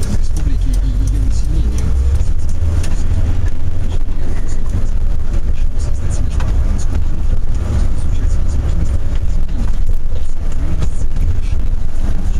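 Minibus cabin on the move: a steady low engine and road rumble with scattered light rattles, and a faint voice from the radio underneath.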